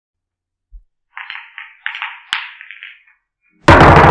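Intro sound effects: a run of thin, crackly bursts with a sharp click in the middle, then a sudden loud deep hit about three and a half seconds in that keeps ringing.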